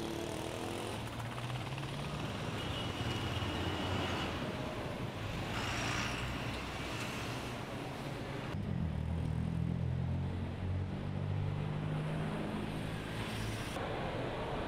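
Road traffic: vehicle engines running and passing, with a steady low engine drone that grows heavier in the second half.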